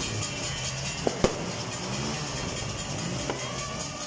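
Two sharp firecracker pops about a second in, a fraction of a second apart, over a steady background of music and outdoor din.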